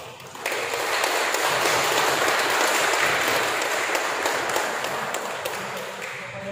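Guests applauding, starting about half a second in and slowly dying down toward the end.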